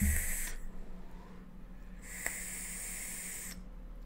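Two hissing draws of air through the airflow holes of a rebuildable dripping atomizer on a box mod. The first ends about half a second in, the second runs from about two seconds to three and a half, with a low bump at the very start.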